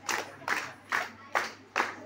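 Hands clapping in a steady rhythm, about two and a half claps a second.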